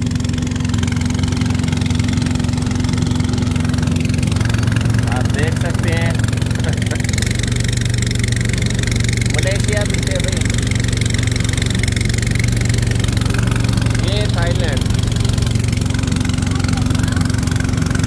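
Small wooden passenger boat's engine running steadily under way, with water and wind noise over it. The engine note shifts slightly about seven seconds in.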